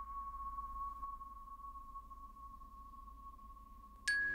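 The long ring of a single struck chime note, one steady high tone slowly fading away. Right at the end, soft music with mallet-like notes comes in.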